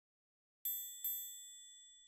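Two bright chime strikes, about half a second apart, each ringing out and slowly fading: the opening notes of a logo jingle.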